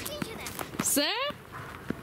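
A person's short cry rising sharply in pitch about a second in, with a few light footsteps on a dirt track.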